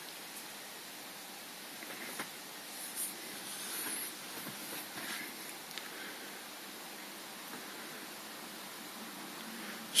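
Quiet room tone with a steady hiss, and a few faint rustles and soft clicks between about two and six seconds in.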